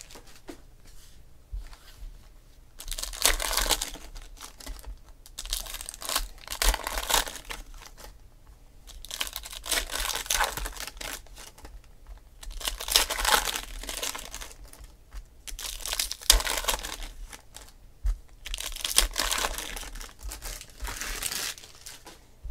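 Foil trading-card pack wrappers being torn open and crinkled by hand. The crinkling comes in about six separate bursts a few seconds apart.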